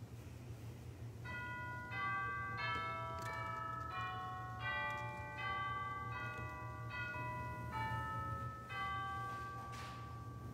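Church organ playing a slow series of sustained chords, quietly, starting about a second in with a new chord roughly every two-thirds of a second.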